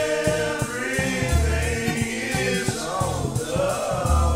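A track from a 1993 Houston rap album: sung vocals holding long, gliding notes over a deep repeating bass line and a drum beat.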